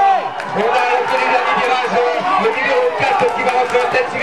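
A man's voice commentating, with crowd noise in the background.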